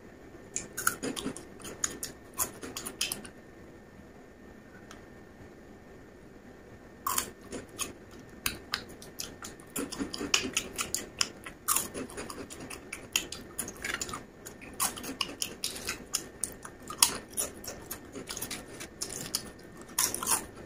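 Close-up chewing of crunchy snacks, potato chips and Taka Tak puffs, crackling in quick runs of crunches. A quieter pause of a few seconds comes early, then the crunching picks up again and keeps on.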